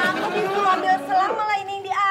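A woman talking without a break.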